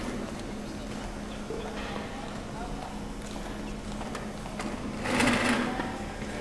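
Indistinct conversation of several people in a large, echoing hall, over a steady low hum. A brief louder burst of noise comes about five seconds in.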